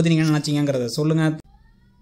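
A voice speaking in drawn-out, level-pitched syllables, cutting off suddenly about one and a half seconds in and leaving only faint thin tones.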